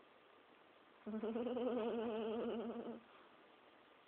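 A drawn-out hummed "mmm" of a voice during a long kiss on the cheek, held steady for about two seconds from a second in, its tone wavering slightly.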